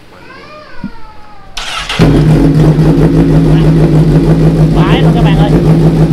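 A 2016 Honda CBR1000RR SP's inline-four engine starts up about one and a half seconds in and settles into a loud, steady idle through an aftermarket SC-Project carbon slip-on exhaust.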